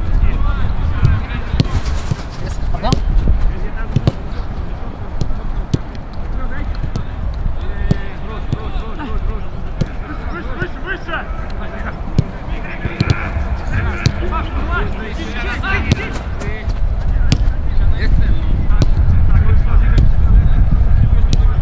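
Footballs being kicked during a passing drill: sharp, irregular thuds of boots striking the ball, over a steady low rumble, with players' voices calling in the distance.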